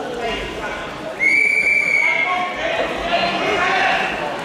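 A referee's whistle blown once, a steady high note lasting about a second, over spectators' voices and shouts.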